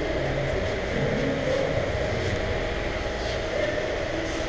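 Steady low background rumble of a busy indoor hall, with faint wavering sounds like distant voices mixed in.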